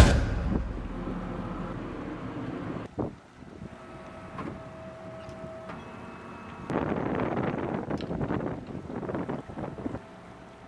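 Wind and sea noise on a boat's open deck: a steady rush with a sharp knock about three seconds in, growing louder and rougher from about seven seconds in.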